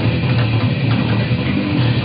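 Five-string electric bass playing a dense, fast technical death-metal line, with drums and guitar in the mix.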